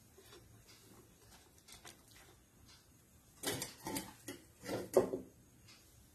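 Soft kitchen handling sounds of a spoon and fingers spreading mashed tapioca on a banana leaf in a steel steamer: faint clicks at first, then a short run of louder scrapes and taps from about three and a half to five seconds in.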